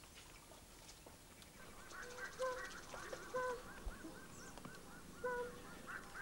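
Birds calling in thick bush from about two seconds in: a fast run of short repeated calls, about three a second, with lower held coos from a tambourine dove breaking in every second or so.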